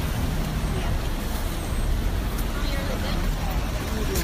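Steady road traffic from cars and a bus passing close by, with a low rumble and faint voices of passers-by mixed in.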